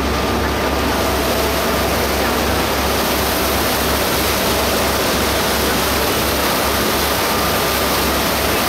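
Steady rushing of a motorboat's churning propeller wake at the stern, over the low, even drone of its engine.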